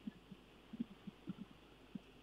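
A quiet pause in the talk: faint steady hum with a few soft, low thumps at irregular intervals.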